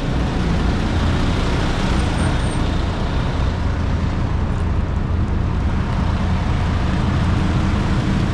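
Steady low rumble of a heavy diesel engine running close by, from a concrete mixer truck, mixed with passing road traffic.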